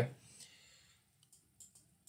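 A few faint, scattered clicks of a computer mouse being pressed and released while drawing.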